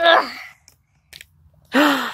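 A child's strained groan of effort while twisting a tight plastic bottle cap, then a few faint clicks about a second in, and a sharp intake of breath near the end.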